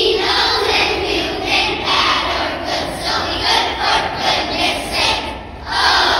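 A large group of children singing loudly together, close to shouting, with a brief drop in the singing near the end.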